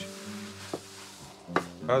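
A kitchen knife cutting wild garlic (ramsons) leaves on a chopping board: two single knocks, under a second apart.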